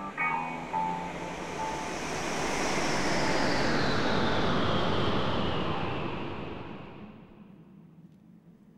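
A few held electric-guitar notes, then a long swelling whoosh of noise that builds to a peak mid-way, its hiss slowly falling in pitch, and fades away near the end: a film transition sound effect.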